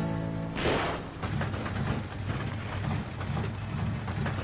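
A music cue ends with a swoosh. Then an old car's engine, as a cartoon sound effect, makes a rhythmic mechanical clanking a few times a second: a noise that means something is wrong with the car.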